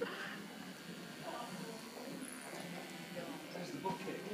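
Faint background voices and murmur, with a laughing word near the end.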